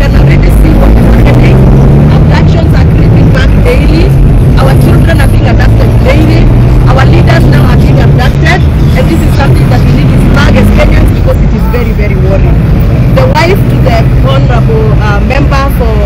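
Indistinct voices of several people talking over a loud, steady low hum of an engine running.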